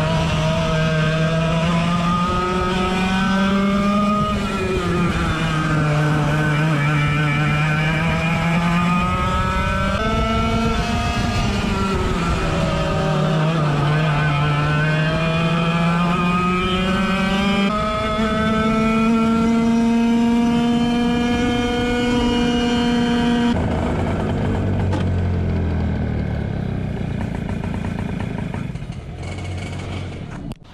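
A 100cc two-stroke kart engine at racing speed, heard from onboard, its pitch rising and falling again and again as the throttle opens and closes. About three-quarters of the way through, the note drops low and slow as the kart slows down.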